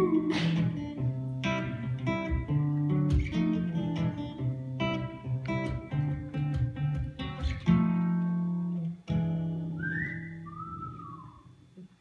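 Acoustic guitar picked and strummed in an instrumental break, then fading away near the end as a person whistles two short sliding notes.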